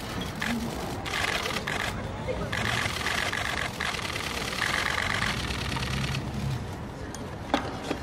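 Press camera shutters firing in rapid bursts for several seconds, over a murmur of voices, with one sharp knock near the end.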